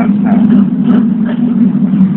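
Steady low drone of a moving public-transport vehicle heard from inside the cabin.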